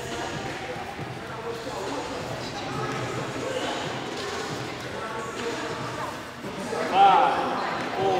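Murmur of many voices echoing in a large gym hall, with one voice calling out louder about seven seconds in.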